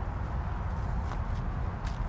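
Steady low wind rumble on the microphone, with a couple of faint crackles of twigs as a hand brushes a thorny hedgerow branch.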